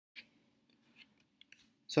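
A few faint, short clicks over a low steady hum, then a man's voice starts speaking near the end.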